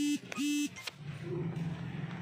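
Two short beeps of a horn, each a steady buzzy tone about a third of a second long, close together in the first second.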